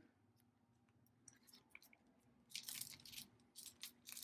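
Faint scratchy rustling of a cardboard cup sleeve being handled while a needle and thread are worked through it on the inside. The rustles come in a few short spells in the second half, after a near-silent start.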